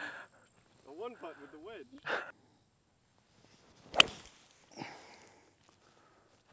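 Brief voices and laughter, then about four seconds in a single sharp crack of a golf club striking the ball off the tee, the loudest sound here, with a short ring after it.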